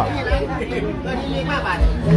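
People talking and chatting.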